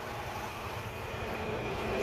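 Engine noise of a passing motor vehicle, a steady rumble that grows gradually louder.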